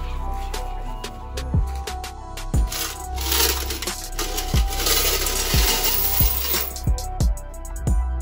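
Loose coins pouring and clinking as a vending machine's coin box is emptied into a bag, the pour densest from about three to almost seven seconds in. Background music with a deep bass beat runs under it.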